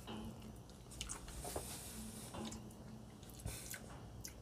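Faint mouth sounds of a person eating a spoonful of soft, creamy ice cream, with a few soft clicks.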